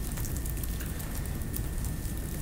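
Room tone in a pause between speech: a steady low rumble with faint scattered crackling and a thin high hum.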